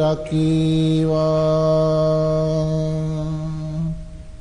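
A Buddhist monk chanting Sinhala verse in a male voice: a short break near the start, then one long, steady held note that stops just before the end.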